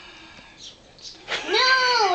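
A small boy's drawn-out, high-pitched vocal whine, starting a little past halfway and rising, then falling in pitch.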